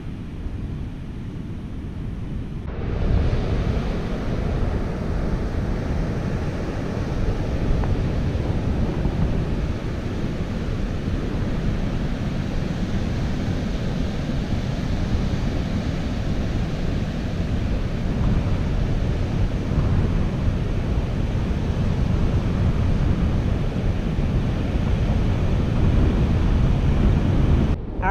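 Surf washing onto a sandy beach, with wind rumbling on the microphone. About three seconds in, the noise steps up louder and brighter, then stays steady.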